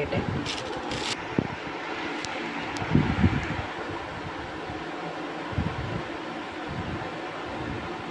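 Steady room hiss with a few short plastic rustles in the first second and scattered soft knocks later, from a piping bag being handled and a palette knife spreading whipped cream over a cake layer.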